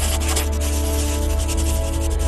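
Logo sting: rapid scratchy sketching strokes over music with a deep bass and held tones.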